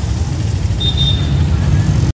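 Steady low rumble of a running engine and road traffic, heard from a CNG auto-rickshaw moving in city traffic, with a faint short high beep about a second in.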